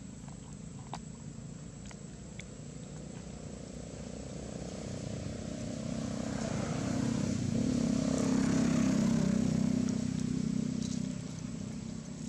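A motor vehicle passing by: a low engine hum that builds, is loudest about eight to nine seconds in, then fades away.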